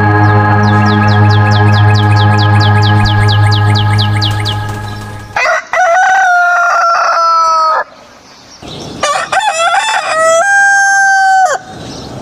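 A sustained organ chord with a quick run of high falling chirps over it, which cuts off about five seconds in; then a rooster crows twice, two long loud crows.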